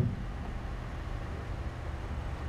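Room tone in a pause of speech: a steady low hum with a faint hiss, and no distinct sounds.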